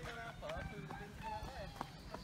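A young child's high-pitched voice chattering in short, wordless bits, with footsteps on a dirt path.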